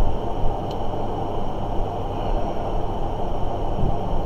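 Steady low rumbling background noise with a constant low hum underneath.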